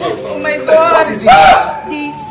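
Raised voices shouting and wailing in distress, loudest in a high cry about one and a half seconds in. A held note of background music comes in near the end.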